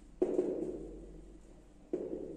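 Marker knocking against a whiteboard, two dull knocks about a second and a half apart, each fading away slowly.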